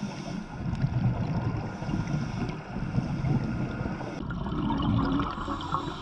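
Underwater recording during a scuba dive: a steady low rumble of water against the camera housing, with gurgling bubbles from the divers' exhalations. The higher part of the sound drops away abruptly a little after four seconds in.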